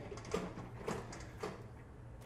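An engine intake manifold being lifted and set aside, giving three faint handling knocks and scrapes.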